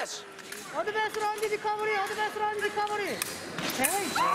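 A person's long yell, held on one steady note for about two seconds, starting about a second in and falling away near three seconds.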